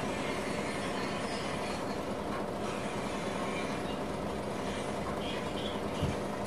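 Steady buzzing hum from the small iron-core step-up transformer of a 12 V to 220 V inverter board, running under load while it lights a bulb.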